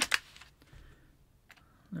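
Faint handling clicks of a small precision screwdriver being taken from a plastic screwdriver-bit case, with one sharper click about a second and a half in.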